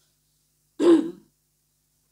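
A woman clearing her throat once, briefly, about a second in.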